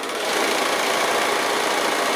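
Bernina sewing machine running steadily, stitching a seam through patchwork fabric strips.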